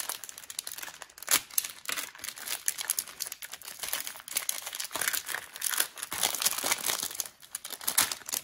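Crinkling and rustling of a trading-card pack's wrapper and the plastic bag holding a mini hockey jersey as they are handled and opened. Irregular sharp crackles run throughout, with one louder crackle about a second in.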